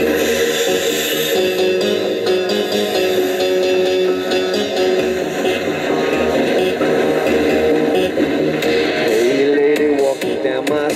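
Live instrumental rock intro: electric guitar over a steady beat, with held notes from a harmonica played into the vocal microphone and a bending note near the end.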